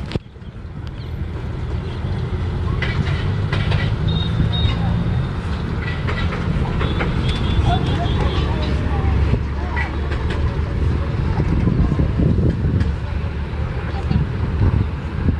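Wind buffeting an outdoor microphone: a steady low rumble that builds up over the first couple of seconds and then holds.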